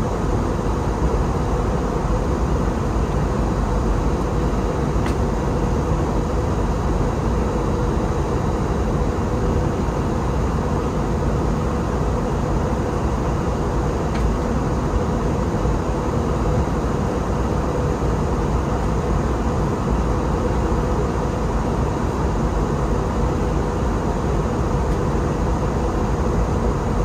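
Steady cabin noise inside an Airbus A321 in flight: the turbofan engines and rushing air make an even, constant drone with a faint steady tone running through it.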